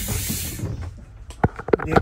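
Compressed air hissing out of a Thomas Saf-T-Liner C2 school bus's air-operated entry door as its release is pressed, dying away about half a second in. A couple of sharp clicks follow near the end.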